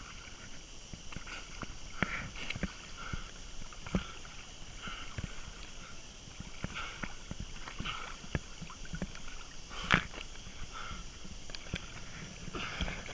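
Water splashing and lapping from a swimmer's one-armed strokes, close to a microphone held at the water's surface: irregular small splashes and clicks, with one sharper splash or knock about ten seconds in.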